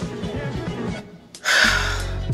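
A man's loud, breathy exhale, a tired sigh, starting about one and a half seconds in, over steady background music.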